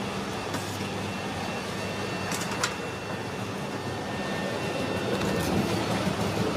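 Steady roadside traffic rumble, with a few light clinks of a steel ladle against steel serving pots, two of them close together a little before the midpoint.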